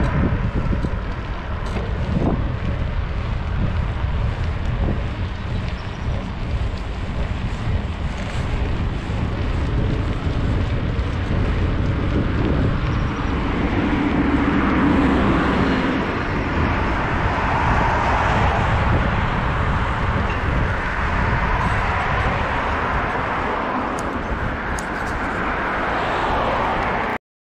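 Wind buffeting the microphone of a camera riding on a moving bicycle: a steady low rumble with rushing road noise, growing louder and brighter from about halfway through.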